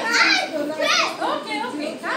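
Children's voices, high-pitched talk and chatter among several kids.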